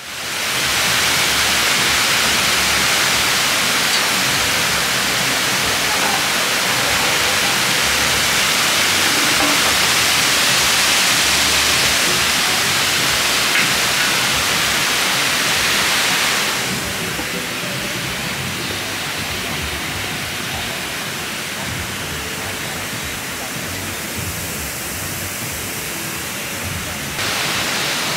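Water cascading over the stone ledges of a pool's waterfall feature: a steady rushing hiss that drops in level about sixteen seconds in and rises a little again near the end.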